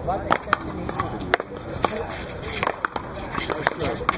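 One-wall paddleball rally: a hard rubber ball cracking off paddles and the concrete wall, seven or eight sharp knocks at uneven spacing, with people talking in the background.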